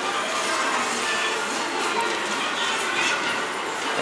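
Store ambience: a steady wash of indoor crowd and room noise with faint background music.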